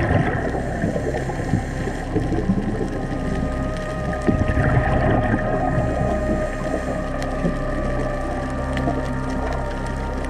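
Underwater sound heard through a dive camera's housing: a steady hum of several held tones over a crackling, rushing water noise, with a few louder surges near the start and about halfway through.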